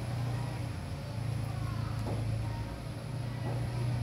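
A steady low mechanical hum, like a nearby engine running, with faint voices in the background.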